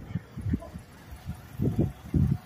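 Irregular low thumps and rumbles from a handheld camera's microphone being carried and handled, a few each second.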